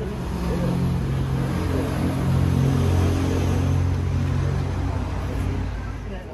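A motor vehicle's engine running close by, a steady low hum that grows louder toward the middle and dies away near the end.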